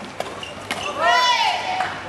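Two sharp racket-on-shuttlecock hits in a badminton rally, then a player's loud, high-pitched shout about a second in, its pitch rising and then falling over about half a second as the point ends.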